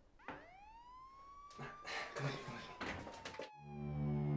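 A police siren wails once, rising in pitch for about a second and a half and then slowly falling, with a knock at its start. Low, sustained music comes in just before the end.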